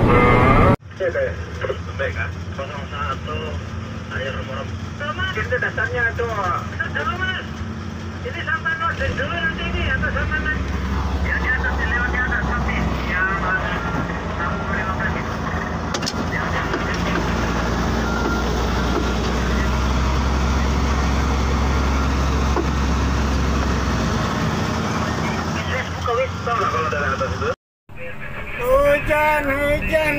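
Diesel engine of heavy mining equipment running steadily with a low hum that grows louder for a stretch in the middle, with indistinct voices over it.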